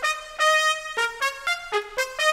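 Sampled brass from the Session Horns virtual instrument playing a run of short single trumpet-like notes at changing pitches, each starting abruptly, about one every quarter to half second. These are the preview sounds of notes as they are placed in a sequencer's piano roll.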